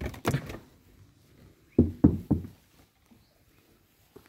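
Knocking on a motel unit door: three quick raps about two seconds in, after a sharp click near the start.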